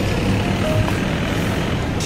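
Loud steady outdoor noise of road traffic, heavy in the low rumble, with wind blowing on the microphone.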